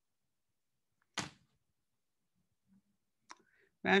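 Near silence on a video call's audio, broken about a second in by one short, sharp noise burst on the microphone and near the end by a faint click, just before a woman starts speaking.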